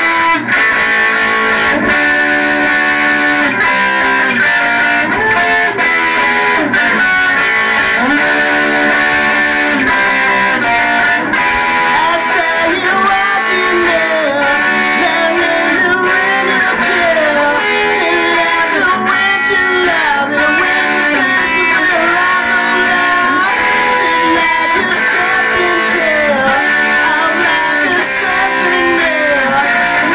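Electric guitar music with bending notes.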